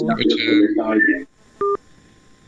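Speech over a phone line, then, about a second and a half in, one short electronic telephone beep as the call is cut off.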